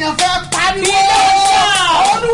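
A woman singing a prayer chant with hand claps sounding through it; her voice glides downward near the end.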